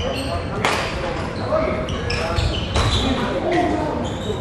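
Echoing badminton hall during play: court shoes squeaking and thudding on the wooden floor, sharp hits, the clearest about two-thirds of a second in, and voices in the background.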